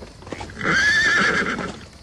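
A horse whinnying for about a second, starting about half a second in, its call wavering in pitch. Under it is the clip-clop of hooves from a horse-drawn wagon.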